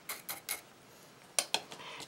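Light clicks and taps of a bone folder against a small glass jar of coarse salt, a few in the first half second, then a couple of sharper clicks about one and a half seconds in.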